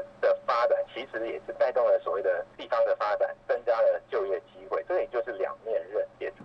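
Speech only: an interviewee talking without pause, with a faint steady low hum underneath.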